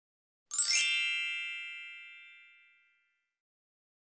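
A magical sparkle chime sound effect: one bright, shimmering ding about half a second in, ringing out and fading away over about two seconds.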